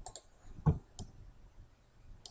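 Computer mouse clicking about four times, short sharp clicks with the loudest about two-thirds of a second in.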